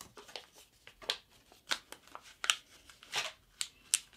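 A sheet of thick paper being folded and creased by hand: a string of short, irregular crinkles and rubbing strokes as the fold is pressed flat, loudest about halfway through and just before the end.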